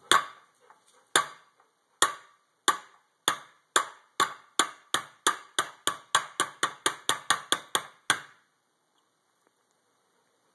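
About twenty sharp, ringing knocks of an upturned metal food can against a plate. They start about a second apart and speed up to around three a second, then stop about eight seconds in. The can is being knocked to shake its contents loose, but the spaghetti and meatballs stay stuck inside.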